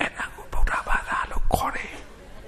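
A man speaking in a hushed, whispery voice into a microphone, in short breathy phrases.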